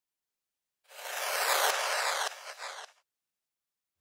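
A transition effect built from a time-stretched crash cymbal, run through bit reduction, auto-pan, reverb and delay with its low end cut. It swells in about a second in, with falling tones running through it, and dies away in a few delay repeats just before the three-second mark.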